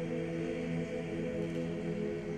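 Male a cappella group singing, holding a steady chord in close harmony.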